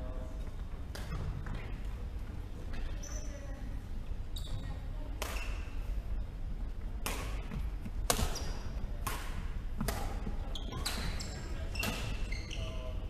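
Badminton racket strikes on a shuttlecock: sharp cracks, a few in the first half and then about one a second in the second half, ringing in a large echoing hall. Short high squeaks of shoes on the wooden court floor come between the hits.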